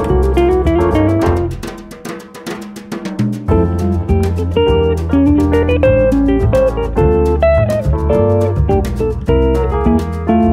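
Small jazz band recording a samba: guitar melody over a bass line and a drum kit played with sticks. The bass drops out and the band thins for about two seconds, then the full group comes back in about three and a half seconds in, on the tune's outro tag.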